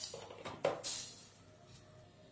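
Brief handling noises at the stove: a light knock at the start and a short clatter about two-thirds of a second in that dies away, with faint music underneath.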